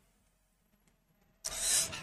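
Near silence, then about one and a half seconds in a short, sharp breath drawn in by a man at a close microphone just before he speaks again.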